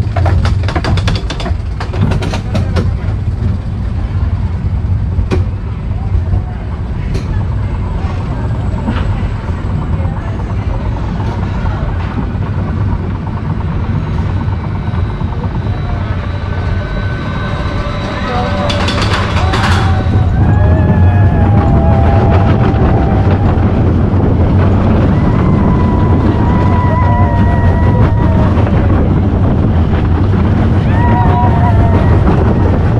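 Goofy's Barnstormer junior roller coaster heard from inside the car: a steady low rumble of the wheels on the track with wind, and a burst of clattering about two-thirds of the way in. After that the rumble grows louder as the train speeds up, with riders' voices calling out over it.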